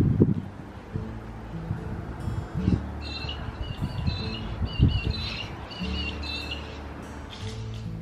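Background music with steady chords. In the middle, a run of short repeated bird chirps sounds over it, along with a few low bumps.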